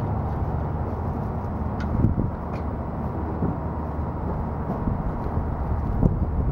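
Steady low outdoor rumble with a few light clicks about two seconds in, as the hitch bike rack's blue handle is tightened and the rack settles back in place.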